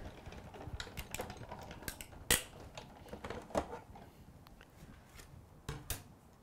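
Hand-cranked Sizzix die-cutting machine being turned, its rollers pressing the cutting plates, magnetic platform and die through. It makes a faint low rumble with scattered sharp clicks, the loudest about two seconds in.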